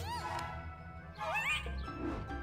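Cartoon soundtrack: background music with short, squeaky sliding-pitch sounds, one arching up and down at the start and one rising about one and a half seconds in.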